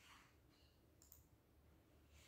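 Near silence: faint room tone with a soft rustle at the start and a brief small click about a second in.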